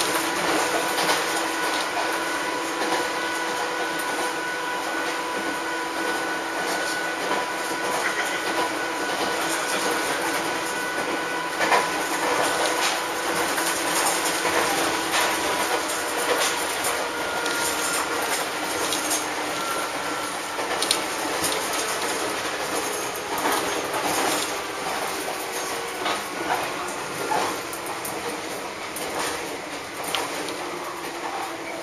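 A Hokuriku Railroad Ishikawa Line electric train running along the track, heard from inside the car: steady rumble and wheel noise with clicks over the rail joints, and a steady whine from the traction motors. The noise eases off a little near the end.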